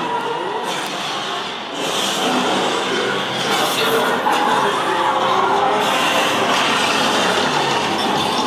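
Action-film soundtrack playing from a display TV, a dense, busy mix of noise and music that gets louder about two seconds in and stays loud.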